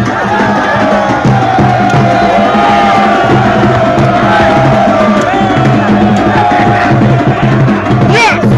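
Drumming with a steady repeating beat under a long, slowly falling high tone, with crowd noise throughout.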